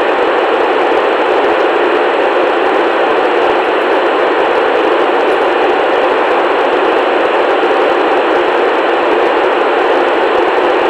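Steady hiss of a Yaesu FT-897D's FM receiver with the squelch open and no signal coming in on the ISS downlink, thin and without bass like noise through a radio's speaker. It is the dead air between the astronaut's answers, when the space station is not transmitting.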